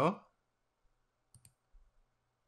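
A few faint, short computer mouse clicks while a file is being picked in a dialog box.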